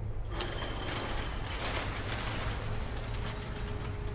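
A panelled sectional garage door rolling open. It starts suddenly into a steady mechanical rumble with a low hum and rattling clicks, and a faint steady tone joins near the end.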